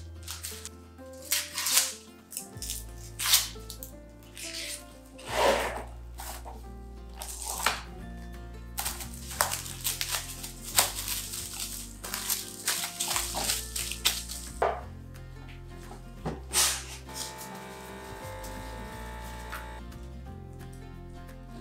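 Background music with a steady bass line, over repeated short crinkling and rustling as onions are handled: the plastic mesh bag and papery skins, and cling wrap pulled off its roll and wrapped around a peeled onion.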